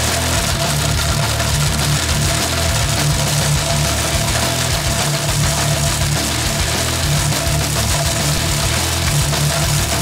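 Several countertop blenders, among them a NutriBullet and a KitchenAid, running flat out and grinding sunglasses with a loud, steady whine. Hard-driving rock music with distorted guitar plays over it.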